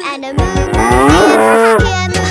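A cow mooing once, drawn out for about a second and a half, its pitch bending up and then falling away at the end, over children's-song backing music.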